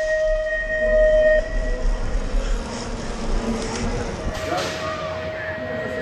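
BMX start gate's electronic cadence ending in one long held tone, about a second and a half, as the gate drops. Then a low rumble of wind and tyres on the bike-mounted camera as the bike rolls down the start ramp, followed by crowd and voices.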